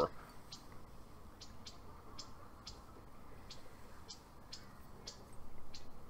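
Quiet outdoor background with faint, short high-pitched chirps repeating about twice a second, and a slightly louder soft noise near the end.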